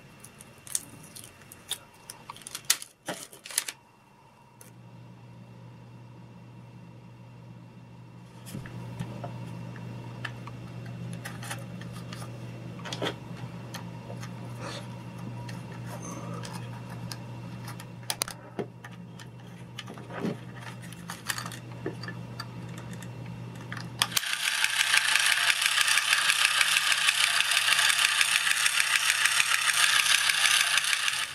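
Small plastic toy-robot parts clicking and knocking as they are handled and fitted, with a faint steady hum underneath. About 24 seconds in, the battery-powered toy robot's small electric motor and plastic gear train start up and run with a loud, fast, chattering whir.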